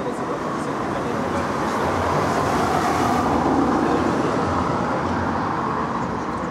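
Street traffic: a passing vehicle's rushing noise swells to a peak midway and then fades.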